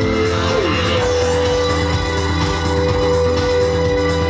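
Ambient electronic music played live on synthesizers: held synth chords over a pulsing bass, with a short falling pitch glide about half a second in.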